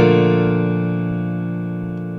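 A chord held on a Kawai piano, ringing and slowly fading. It is the closing chord of a fast, loud improvisation on the B-flat major scale.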